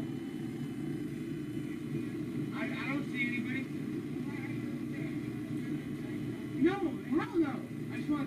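Steady low hum of an idling car, with short bursts of distant voices calling out about three seconds in and again near the end.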